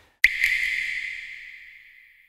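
A single bright, bell-like chime sound effect, struck once and ringing out, fading away over about a second and a half.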